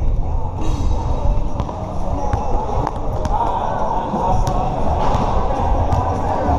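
A basketball bouncing on a hard court, a few sharp knocks over a steady din of distant voices and music.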